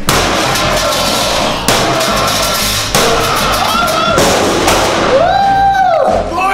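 Hammer blows on the top of a steel safe: four sharp strikes about a second and a quarter apart, over background music.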